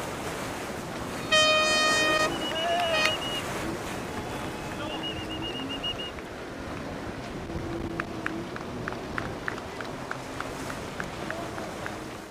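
A horn blast about a second and a half in, lasting about a second, then shorter, higher wavering horn or whistle tones, over steady wind and water noise. Near the end comes a quick run of light taps, about three a second.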